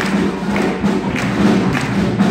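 Live swing jazz band playing dance music for lindy hop, with sharp hits on the beat about three times a second.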